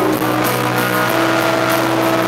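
Rock band playing live, recorded from the crowd in an arena: electric and acoustic guitars with drums, the chords held as steady sustained notes over a constant low bass note.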